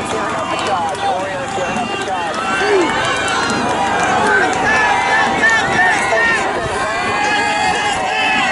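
Crowd of spectators shouting and cheering, many voices overlapping at once with high yells throughout.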